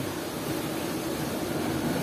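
Steady rush of ocean surf breaking on a rocky shore.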